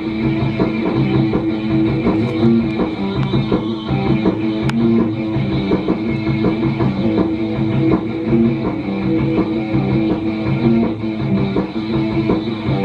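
A live rock band playing loudly with electric guitar, bass guitar and drum kit, heard from an old videotape played through a TV speaker and re-recorded by a camera.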